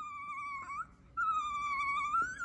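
Two drawn-out, high-pitched mouse squeaks, each about a second long with a short gap between them, the second rising in pitch at its end. They are the voice given to a toy mouse puppet.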